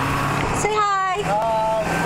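A high-pitched voice making short gliding sounds without clear words, over the steady low drone of a pickup truck's engine inside the cab.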